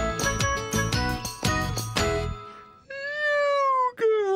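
A bright, tinkling children's-show music sting that stops about two and a half seconds in. Then a puppet character's drawn-out vocal sound that slowly falls in pitch.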